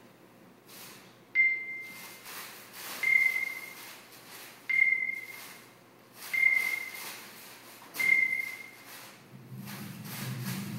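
A high, steady whistle-like electronic tone, sounded five times at even intervals of about a second and a half. Each note starts abruptly, holds one pitch and fades out.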